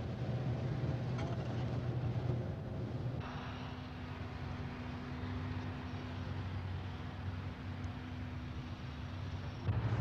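Steady low background hum with no clear event. About three seconds in the background changes, bringing in a faint steady tone, and it continues unchanged from there.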